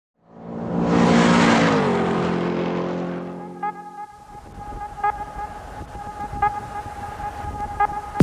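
A car going past at speed, its engine note dropping in pitch as it passes and then fading away. A steady electronic tone with a soft tick about every second and a half then begins as the music comes in.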